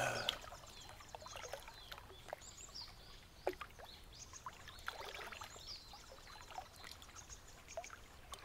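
Faint lakeside ambience: gentle water lapping, with scattered short high chirps like small birds.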